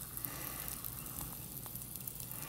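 Faint fizzing with a few soft ticks from calcium metal reacting in water, as bubbles of hydrogen gas rise and break at the surface.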